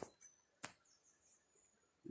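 Near silence outdoors, broken by one faint sharp click a little over half a second in.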